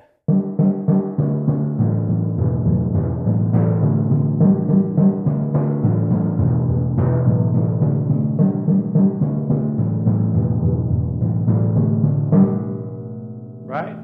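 A set of four copper timpani played with felt-headed mallets in a fast, even run of strokes, groups of three and two notes moving from drum to drum so that the pitch steps between the drums' tunings. The playing stops about twelve seconds in and the drums ring on.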